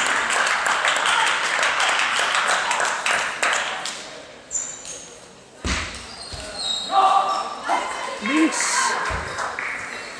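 Clapping and crowd noise in a sports hall, dying away after about four seconds. Then scattered clicks and bounces of table tennis balls and a loud thump about halfway through, with spectators talking.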